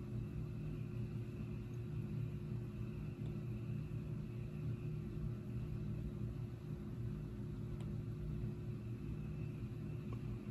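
A steady low hum with a few faint level tones, unchanging throughout, with no distinct taps or strikes.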